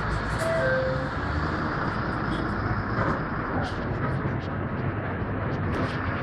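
Steady engine and road noise heard from inside a moving city bus.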